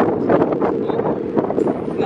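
Wind buffeting the microphone, a loud, steady low rumble, with a few short knocks mixed in.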